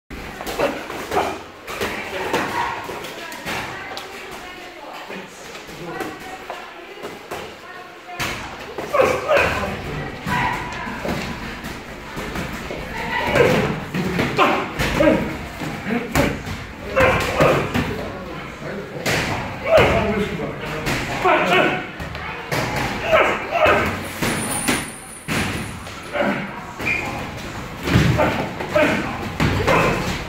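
Boxing gloves landing punches in sparring: repeated dull thuds of gloved blows, with voices talking and calling out throughout.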